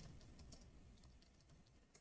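Faint computer keyboard typing: a quick, irregular run of soft key clicks.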